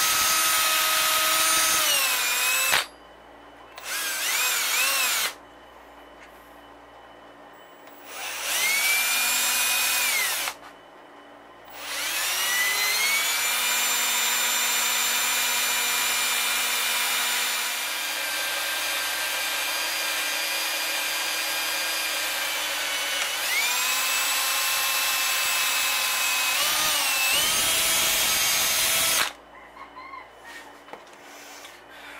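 Milwaukee cordless drill boring a 1/8-inch pin hole through a crepe myrtle wood handle clamped in a vise. The motor whine comes in short bursts that start, stop and change pitch as the trigger is worked. It then settles into one long run of about seventeen seconds that shifts in pitch twice before stopping just before the end.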